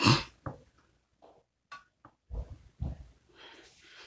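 A few faint, short handling sounds of a gloved hand repositioning a small spray-painted part on a plastic cutting board.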